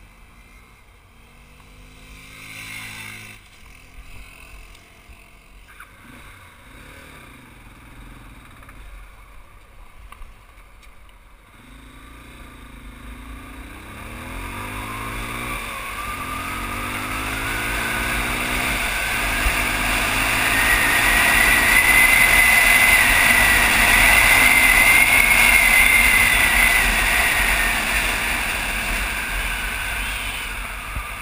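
Motorcycle engine riding on, its pitch climbing and resetting with each gear change as it accelerates from about halfway through. Wind noise on the microphone grows loud as the speed builds, then eases near the end.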